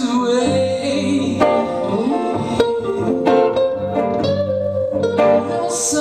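Two electric guitars playing live in an instrumental passage: a lead line of separate picked notes over a second guitar's accompaniment.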